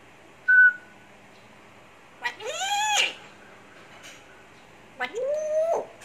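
African grey parrot calling: a short, high, pure whistle about half a second in, then two drawn-out meow-like calls, each rising in pitch and then holding, around two and five seconds in.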